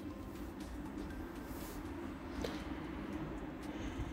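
Quiet room tone: a faint steady low hum with a few soft ticks, the clearest about two and a half seconds in.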